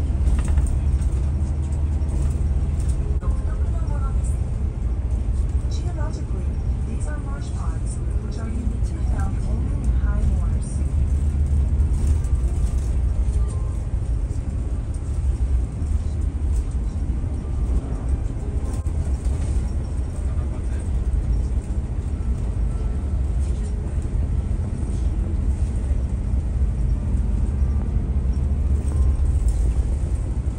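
Bus engine and road noise heard from inside the cabin: a steady, deep rumble with the hiss of tyres on the road. Faint voices come through in the first third.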